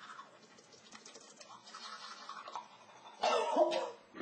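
Toothbrush scrubbing teeth faintly. About three seconds in, a woman gives a short loud cough, sputtering through a mouthful of toothpaste foam.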